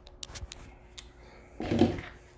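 A few light clicks and knocks as a metal baking sheet of roasted peanuts is handled and set down on a stovetop, followed by a brief louder sound near the end.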